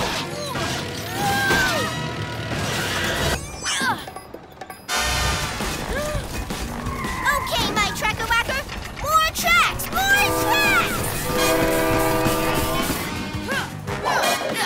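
Cartoon action soundtrack: music under wordless character exclamations and sound effects. It dips quieter about four seconds in, then comes back suddenly and loudly, and a held chord of stacked tones sounds from about ten to thirteen seconds.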